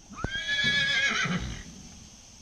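A horse whinnying once: a high call that rises quickly, holds steady for about a second, then wavers and fades.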